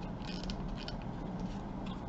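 Faint handling noises of fabric trim and a lampshade being worked: a few soft, brief rustles and light creaks over a low steady hum.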